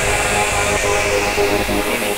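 Early-1990s acid techno track: a sustained, dense synth texture with high hiss and no drums.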